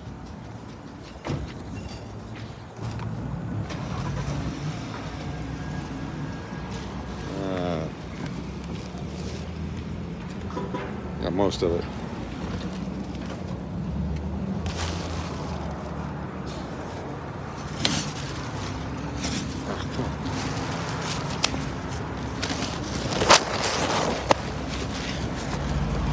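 Rubbing and handling noise from a hand-held phone over a steady low hum. In the second half come a few sharp clicks and knocks, the loudest near the end, as the car door is worked and the phone is set in a mount.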